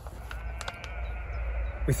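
A faint, drawn-out animal call lasting about a second and a half, over a low steady outdoor rumble.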